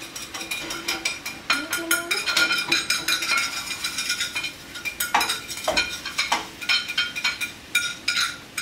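Metal cooking utensils clinking and scraping against a pan and plates at the stove, an irregular run of short sharp clicks and knocks while the cheesesteak filling is worked in the pan.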